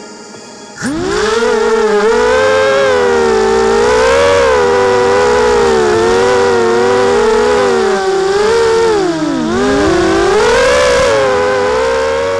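Small FPV quadcopter's brushless motors (Tiger MN1806 2300kv on 5x3 two-blade props) spinning up sharply about a second in, then a loud whine whose pitch wavers up and down with the throttle. About three quarters of the way through it dips low briefly, then rises again.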